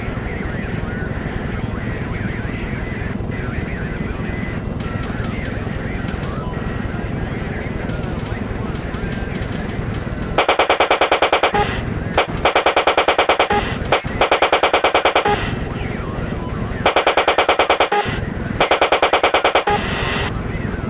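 A steady low rumble, then in the second half five bursts of rapid automatic gunfire, each about a second long with short gaps between them.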